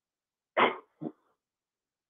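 A person coughing twice in short bursts, the first longer than the second.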